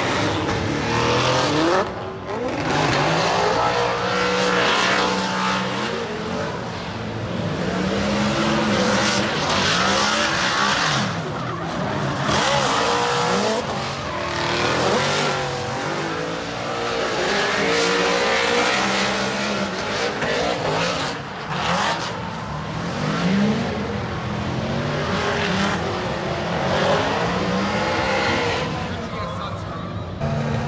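Two drift cars in a tandem run, engines revving high and swinging up and down in pitch as they slide through the corners, over a constant tyre squeal.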